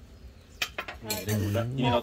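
A few light clinks of cutlery and dishes at a meal table, followed about a second in by a man speaking in Thai.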